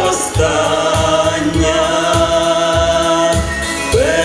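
A man and a woman singing a Ukrainian pop song in duet, holding one long sustained note over instrumental accompaniment with a pulsing bass.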